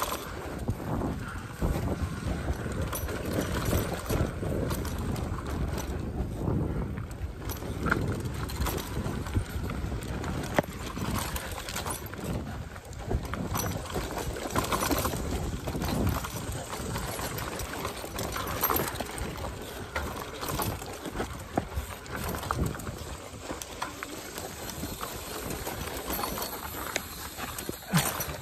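Mountain e-bike rolling fast over a rough dirt trail: a continuous rumble of tyres on the ground with frequent knocks and rattles as the bike jolts over bumps.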